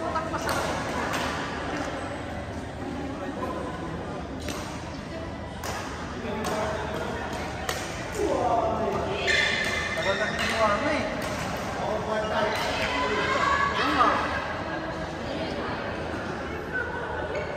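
Badminton rackets striking a shuttlecock: sharp, irregular hits a second or so apart, echoing in a large sports hall. Players' voices call out, mostly in the second half.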